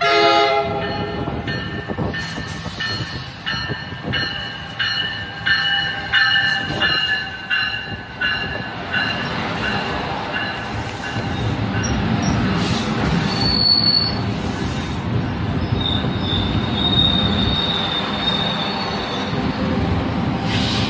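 New Jersey Transit train arriving. It opens with a short horn sound, then the locomotive bell rings about once every 0.7 s for several seconds. The double-deck coaches then rumble past, with high wheel and brake squeals twice in the second half.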